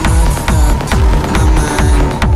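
Uplifting trance music with a steady four-on-the-floor kick drum, a little over two beats a second, under sustained synth chords.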